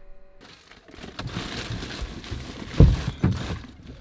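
Rustling and handling noises inside a parked car's cabin as people settle into the front seats, with one heavy thump nearly three seconds in and a few lighter knocks after it.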